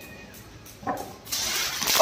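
A firecracker catching and fizzing, spraying sparks with a loud, steady hiss that starts a little past halfway.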